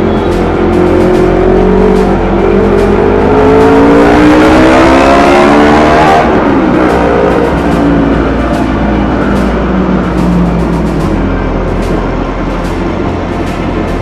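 Motorcycle engine pulling through traffic: its pitch rises steadily for about four seconds as it accelerates, then drops back as the throttle eases, with steady road and wind noise underneath.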